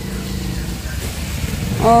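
Steady low engine rumble of a vehicle in street traffic.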